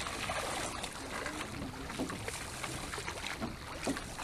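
Water splashing and sloshing around a rowing boat and its oars as the crew rows, over a steady rush of wind.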